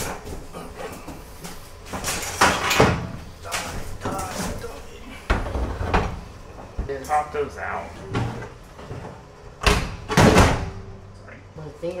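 Metal clunks and knocks of an aluminum winch box being lowered into a cutout in an aluminum trailer floor and shifted into place, the loudest pair about ten seconds in.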